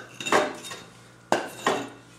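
A hammer striking a wooden board in a few sharp knocks, each with a short ring after it. The strikes come in pairs, the second pair near the end.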